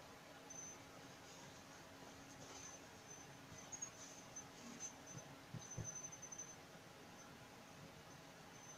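Near silence: faint rustling of cloth being lifted and folded on a cutting table, with faint short high-pitched chirps now and then.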